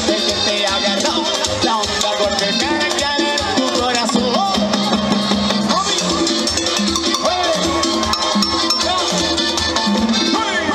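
Cuarteto band playing live: congas, electric bass and other instruments over a steady dance beat.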